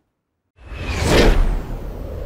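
After about half a second of dead silence, a whoosh sound effect swells up over a deep rumble, peaks about a second in, then settles into a steady low drone: the sound of an animated logo transition.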